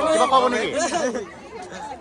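Crowd chatter: a voice talking close by for about the first second, then falling back to lower background babble of many people.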